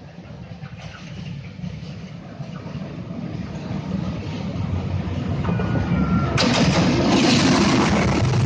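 Diesel locomotive approaching and passing close by, its engine rumble growing steadily louder. A brief high tone sounds about five and a half seconds in, and the sound turns suddenly loud and full about a second later as the locomotive comes alongside.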